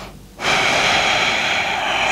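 A woman's deliberate deep exhale, a long audible breath out that starts about half a second in and lasts about a second and a half, a cued yoga breath between core exercises.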